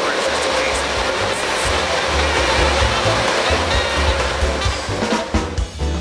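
Background music with a steady bass line over a loud, even rushing noise from water treatment plant machinery. Near the end the rushing thins and a drum beat comes to the front.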